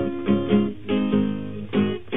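Acoustic blues guitar picking a short run of single notes and chords, a new note struck every third to half second, with a muffled, treble-less sound typical of an early-1930s blues recording.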